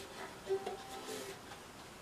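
Strings of a RockJam sapele tenor ukulele sounding faintly as the instrument is handled and turned over, with a soft short note about half a second in and another weaker one a little after a second.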